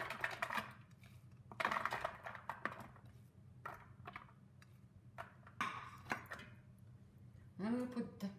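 A metal fork clinking and scraping against a ceramic bowl as chopped onions are pushed off into an enamel pot, in a few short bursts: one at the start, another around two seconds in and another around six seconds in.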